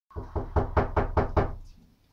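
Rapid knocking, about seven even knocks at roughly five a second, dying away about halfway through.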